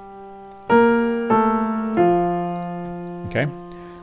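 Piano playing three melody notes in octaves, each a step lower than the last, struck about two-thirds of a second apart and left to ring and fade.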